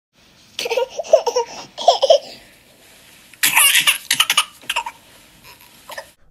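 Bursts of laughter: two short groups of pulses in the first two seconds, then a louder, brighter run of pulses from about three and a half to five seconds in.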